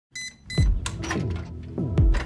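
Two short high-pitched beeps from an electronic safe's keypad being pressed, then dramatic trailer music with deep booms that fall in pitch.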